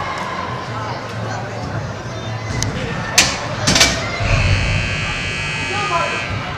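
Sharp thuds of an indoor soccer ball being struck, a few of them in quick succession a little past halfway, over the hubbub of players' and spectators' voices in a large hall.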